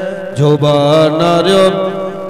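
A man chanting a devotional verse in a slow, sung style, drawing each syllable out into long wavering notes. His voice dips briefly at the start, and a new phrase begins about half a second in.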